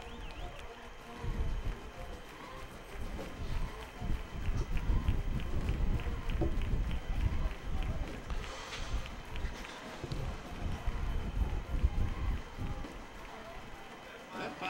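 Quiet outdoor stadium ambience through the camera microphone: an uneven low rumble with faint distant voices, and a run of faint regular ticks in the middle.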